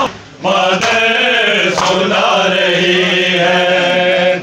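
Group of men chanting a Shia Muharram noha (mourning lament) together, drawing out long held notes after a brief lull at the start, with a couple of faint slaps of matam chest-beating.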